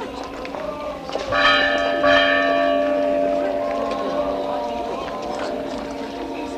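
Church bell tolled: two strikes about a second apart, starting near the beginning of the second second, each ringing on and dying away slowly. A crowd's voices murmur underneath.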